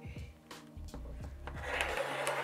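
Rotary cutter blade rolling along a quilting ruler through several layers of folded fabric on a cutting mat: a rising scratchy rasp in the last half-second, after a few light taps. Soft background music plays throughout.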